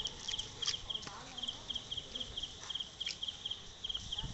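A cricket chirping steadily in short double pulses, about three to four chirps a second, with a few sharp clicks among them.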